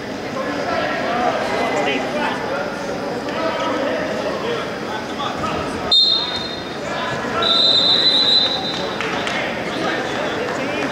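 Indistinct voices of coaches and spectators in a large gym hall. About six seconds in comes a short high whistle blast, and a second later a longer one of about a second, in the manner of a referee's whistle.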